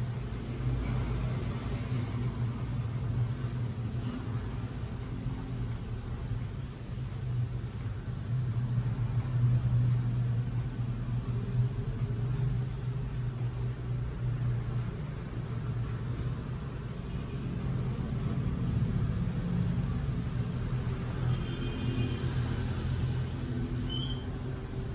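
Steady low background rumble with no distinct events, swelling and easing slightly.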